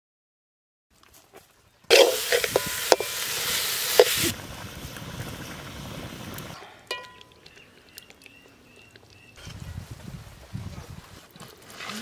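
Outdoor cooking sounds cut one after another: after a silent second, a loud sizzle with sharp crackles, as of food frying, then a quieter crackling hiss of a wood fire burning under a cooking pot.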